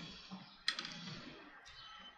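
Wooden knitting needles clicking softly as two stitches are knitted together in cotton yarn: a faint tick, then a sharper click within the first second, followed by faint handling rustle.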